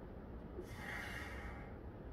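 A man's breathing while he hangs upside down: one breath about halfway through, part of a slow even rhythm, over a steady low rumble.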